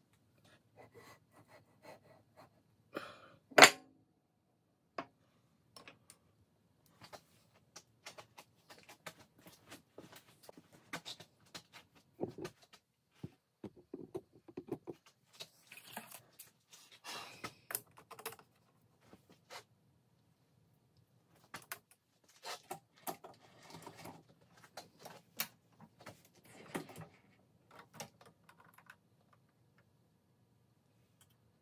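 Scattered metallic clicks, taps and clinks of valve-train parts being handled and fitted on a Ford 427 medium-riser cylinder head, with one sharp, much louder knock about three and a half seconds in.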